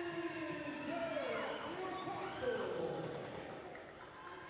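Spectators cheering and shouting after a made three-pointer, many voices at once, dying down near the end.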